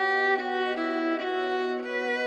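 Violins playing a slow melody of long held notes, soft and without bass or percussion: the opening of an old Hindi film song.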